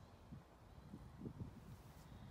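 Near silence: faint open-air background with a few soft, low rumbles.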